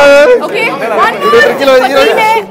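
Loud chatter: several people talking and calling out over one another.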